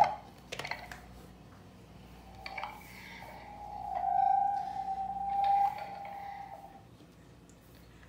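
Wireless baby monitor feeding back: a steady whistling tone from the monitor's speaker picking up the nearby camera's microphone, because the two units sit close together. It starts a couple of seconds in, swells, then fades out near the end as the units are moved apart, after a few light handling knocks at the start.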